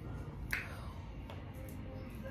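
A single sharp click about half a second in, then a fainter tick, over low room noise.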